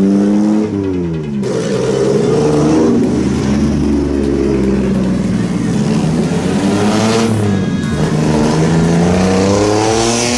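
Small kei truck engines driving past and revving. One drops sharply in pitch as it passes in the first second or so, the pitch wavers through the middle, and another rises in pitch as it approaches near the end.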